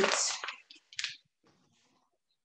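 A woman saying the word "put", then two brief handling noises, a shorter one about half a second in and a sharper click-like one about a second in.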